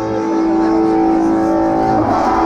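Amplified electric guitar notes left ringing through the amps as a rock song ends, a loud steady held tone with a higher ring above it, the drums already stopped.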